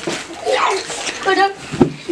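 Boys crying out and shouting in short high-pitched bursts while they wrestle, with the rustle of bodies scuffling on a woven cot and a single thump near the end.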